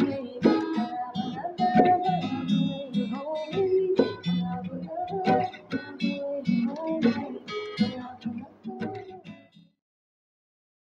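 Acoustic guitar being strummed in an irregular rhythm, fading out shortly before the end.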